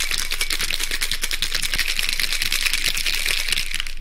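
Ice rattling in a cocktail shaker being shaken fast and steadily, a dense run of clicks.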